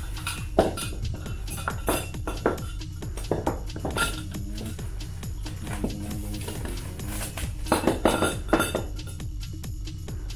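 Background music with a steady beat, over the clinks and knocks of the chair's metal tubes being unwrapped and handled, with a run of louder knocks near the end.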